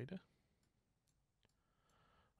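A few faint computer mouse clicks, about three spread over a second, over near-silent room tone.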